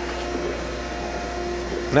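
Okamoto ACC-1632DX hydraulic surface grinder running in its automatic downfeed cycle: a steady machine hum with a faint, even tone riding on it, unchanging throughout.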